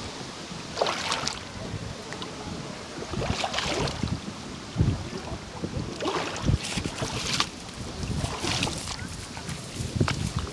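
Footsteps and brushing through dry brush and undergrowth: about five irregular bursts of rustling and crunching, with low thumps, over wind noise on the microphone.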